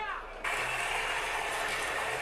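Steady rushing noise from a TV episode's soundtrack, starting abruptly about half a second in.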